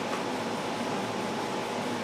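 Steady hum and hiss of an air conditioner running, with no other distinct sound.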